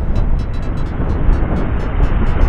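Strong wind buffeting the microphone with surf breaking on the shore: a loud, rough, low rumble that drowns out everything else, including the metal detector's tones.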